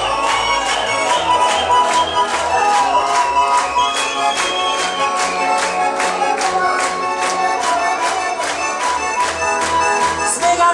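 Russian garmon (button accordion) playing an instrumental interlude without singing: a reedy melody over a steady chord rhythm of about three beats a second.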